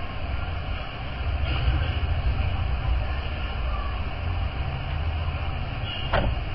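Steady low rumble with an even hiss over it, with no clear strokes or tones: background noise of the recording.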